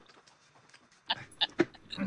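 About a second of near silence, then three or four short bursts of stifled laughter.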